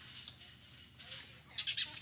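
Flying fox (fruit bat) squawking: a quick run of sharp, high-pitched calls near the end, with a few fainter ones at the start.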